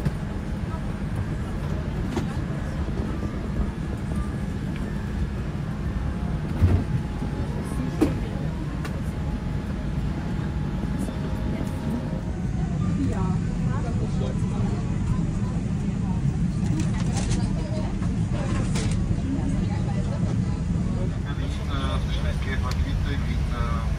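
Boeing 787 cabin ambience during boarding: a steady low hum with the murmur of passengers talking, and two sharp knocks about seven and eight seconds in.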